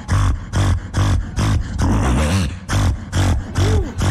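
Live beatboxing through a stage microphone: a rhythmic beat of mouth-made kick and snare sounds, about four a second, over deep bass, with short sliding vocal tones near the middle and end.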